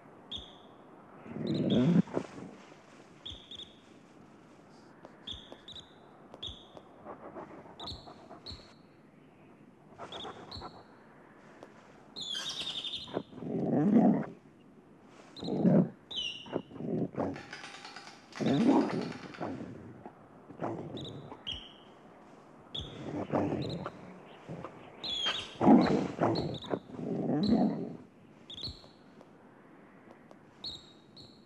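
Yellow-bellied marmot alarm whistles, short high chirps repeated about once a second, warning of a coyote. Between them the coyote sniffs and snuffles at the burrow entrance in several louder bursts.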